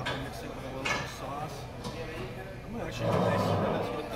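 Indistinct voices of people talking in a restaurant, not clear enough to make out words, growing louder for most of the last second.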